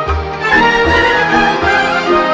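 Instrumental Romanian folk music, a violin carrying the melody over a pulsing bass: the band's introduction before the singing comes in.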